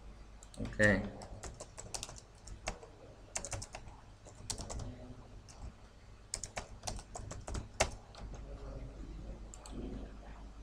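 Typing on a computer keyboard: irregular, quick key clicks in short runs throughout, with a brief voice sound about a second in.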